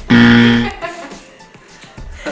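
Buzzer sound effect: one loud, short, steady buzz of about half a second, marking a wrong trivia answer, over background music.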